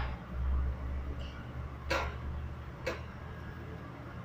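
Handling noise: a low rumble from a hand-held phone and a cardboard game box being moved close to the microphone, with two short scuffs about two and three seconds in.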